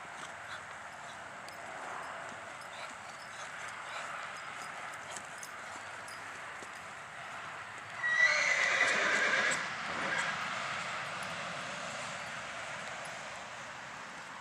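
Soft hoofbeats of a horse loping on arena sand, with a horse whinnying loudly about eight seconds in for roughly a second and a half.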